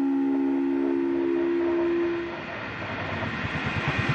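Experimental electronic sound piece: a held two-note chord, horn-like, that stops a little over two seconds in, followed by a quieter hissing texture with a faint low pulse.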